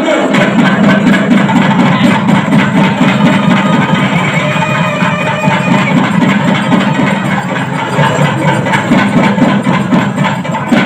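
Loud, continuous music with a fast, busy rhythm.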